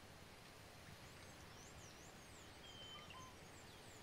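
Near silence: faint outdoor film ambience with a few thin, high bird chirps and a short whistled note in the middle.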